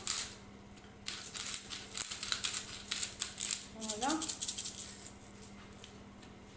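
A small seasoning shaker jar being shaken hard over a pan, giving a fast dry rattle that runs for about four seconds and stops about a second before the end. A brief vocal sound comes about four seconds in.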